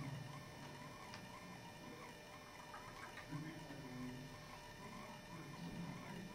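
Quiet hall room tone with a faint steady electrical whine, a small click about a second in, and a faint low murmur of a voice around the middle.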